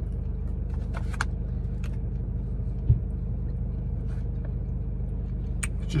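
A taxi's engine idling steadily, heard from inside the cab, with a single thump about halfway through and a few faint clicks.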